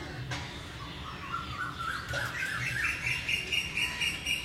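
A bird calling in rapid repeated high notes. Through the middle they climb in pitch, then they carry on at one steady pitch.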